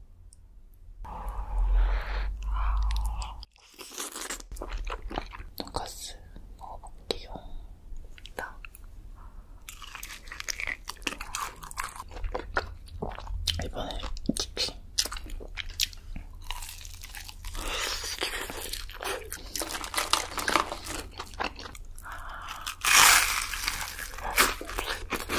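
Close-miked eating: crunchy bites and chewing of sauced fried chicken and breaded pork cutlet, a dense run of irregular crunches and wet mouth noises. Louder stretches come near the start and again near the end.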